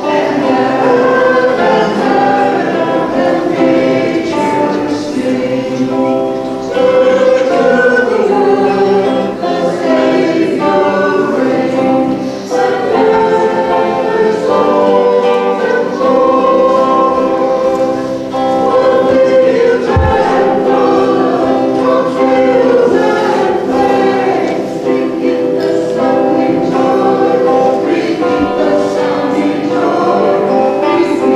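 A choir singing a hymn, with long held notes.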